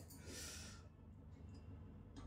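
Very quiet kitchen: a ladle scraping softly in a metal cooking pot during the first second, over a low steady hum.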